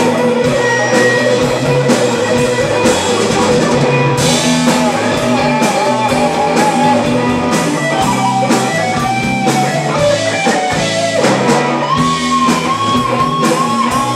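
Live blues band playing an instrumental break: electric guitars over a drum kit, with a lead line of held notes that bend in pitch.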